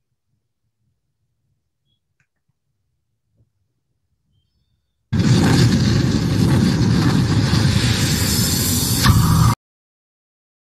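Loud rushing, explosion-like sound effect from a promotional intro video's soundtrack, starting abruptly about five seconds in and cutting off suddenly some four and a half seconds later.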